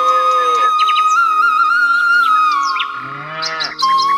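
Instrumental introduction of a Hindi devotional bhajan: a flute plays a held, gliding melody over a keyboard backing. A lower swelling sound bends in pitch at the start and again near the end.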